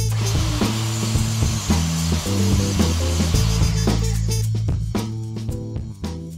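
A table saw cutting red oak: a steady noise over background music that fades away over the last second or two.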